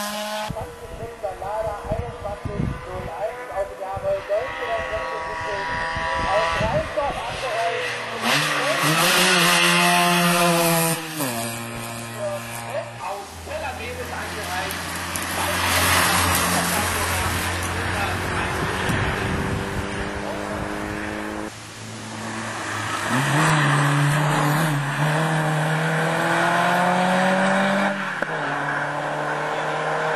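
Racing touring car engine at high revs on a hillclimb, its pitch climbing under acceleration and dropping sharply at each upshift, several times over.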